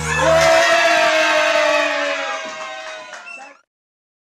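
Children cheering and shouting as a birthday song ends. The music's bass stops about half a second in, and the cheering and a last held note fade out to silence about three and a half seconds in.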